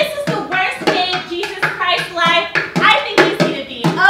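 Sticks beating a drum rhythm on a plastic bucket, the strikes coming every few tenths of a second, with voices vocalizing over them.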